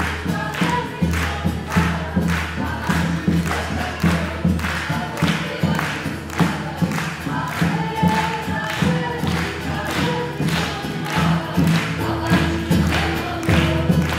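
A group of voices singing together over a steady drum beat.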